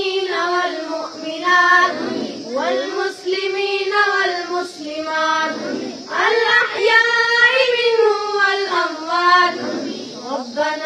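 Boys' voices chanting an Arabic supplication (dua) in a melodic recitation through a microphone, in long drawn-out phrases with brief pauses for breath.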